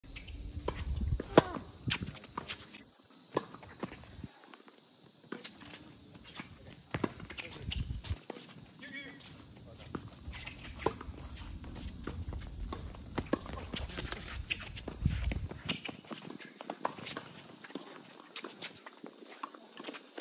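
Tennis rally on a hard court: tennis balls struck by rackets in sharp, irregular pops, with players' shoes scuffing and squeaking as they move. The sharpest strike comes about a second and a half in.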